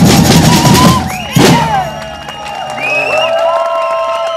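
Samba-style street drum group with metal-shelled surdos and snare drums playing at full volume, breaking off with one final accented hit about a second and a half in. The drums ring out under the crowd's cheering and whoops.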